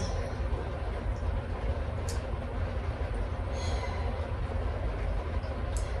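Steady low background rumble with a faint hiss, and a faint tick about two seconds in.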